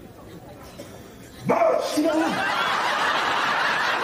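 Studio audience laughter, breaking out suddenly about a second and a half in and carrying on.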